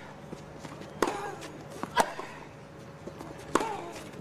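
Tennis balls struck by rackets in a practice rally: three sharp hits, about a second or so apart.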